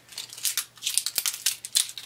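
A thin clear plastic packaging sleeve crinkling and crackling in quick, irregular handling noises as an eyeliner pencil is worked out of it by hand.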